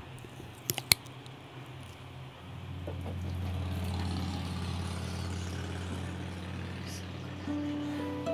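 A couple of handling knocks, then a steady low hum that becomes the loudest sound. Near the end, a few ringing picked notes on an acoustic guitar come in.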